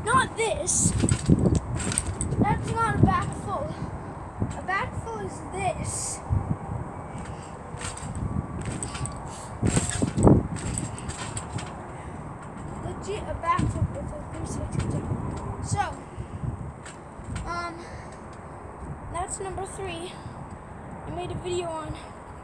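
A child's voice talking indistinctly, with thumps from bouncing on a backyard trampoline; the loudest thump comes about ten seconds in.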